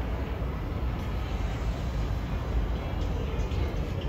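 New York City Subway train rumbling on the track in an underground station: a steady low rumble with no distinct clanks or horn.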